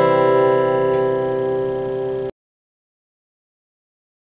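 A C major chord on an acoustic guitar, ringing out from a single strum and slowly fading, then cut off abruptly a little over two seconds in.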